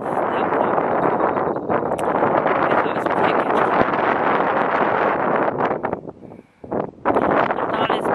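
Strong wind buffeting the camera microphone with a loud, rough rumble that drops away briefly about six seconds in, then returns.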